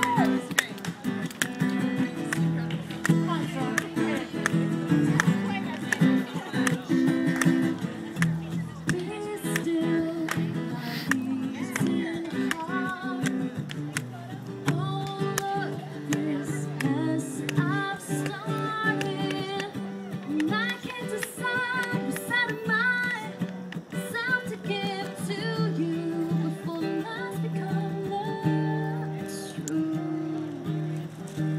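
Acoustic guitar strummed steadily, with a woman singing a melody over it into a microphone, amplified through a small PA.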